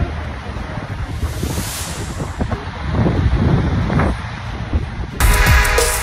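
Wind buffeting a phone microphone, with beach surf in the background. About five seconds in, hip-hop music starts abruptly.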